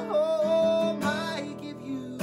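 End of a song on acoustic guitar and a man's voice: a long sung note held over the chords, then another guitar strum about a second in as the music fades down.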